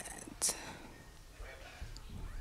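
A quiet pause broken by a short breathy hiss into the microphone about half a second in, then faint whispering.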